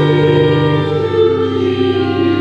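Church organ and voices singing a hymn together, slow held chords that change every half second or so.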